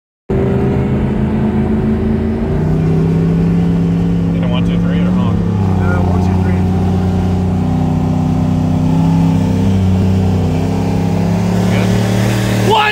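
Camaro ZL1's supercharged 6.2 L V8 running at a low, steady cruise, heard from inside the cabin. The engine note holds almost level, with only small shifts in pitch.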